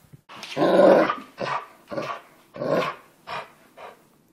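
A dog growling in play over a rope toy: a run of short growls, the first and longest the loudest, then a few shorter ones fading off.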